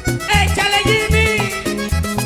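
A live vallenato band playing an instrumental passage: a button accordion carries a wavering melody over a steady bass line and percussion.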